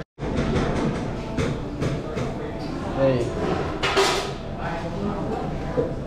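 Fast-food restaurant interior ambience: faint background voices with the clatter and knocks of kitchen utensils and pans, and a brief louder clatter about four seconds in.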